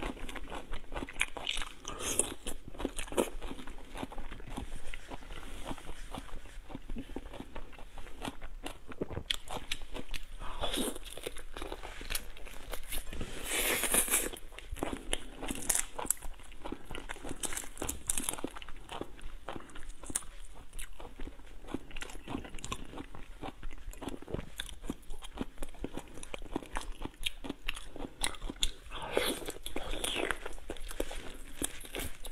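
Soy-marinated shrimp shells being cracked and peeled apart by hand: a dense run of crackling and clicking, with some chewing. The loudest crackling comes about halfway through.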